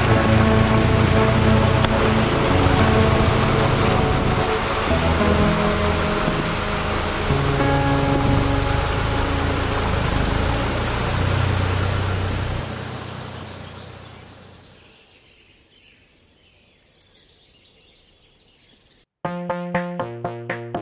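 Background music with sustained chords over a steady rush of noise, both fading out about two-thirds of the way through. A few seconds of quiet follow with faint bird chirps, then a new electronic music track with a steady beat starts just before the end.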